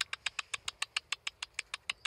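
A person clicking his tongue in a rapid, even run of about ten clicks a second to call ducks.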